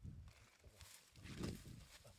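Bare hands scraping and scooping dry, crumbly soil out of a hole in the ground, with a couple of louder scuffs in the second half.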